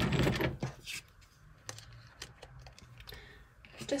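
Tarot cards being handled: a brief rustle of cards near the start, then a few faint light taps and clicks as cards are drawn and laid down.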